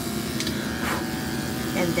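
Electric dog grooming clippers running with a steady hum as they shave the fur around a small dog's rear.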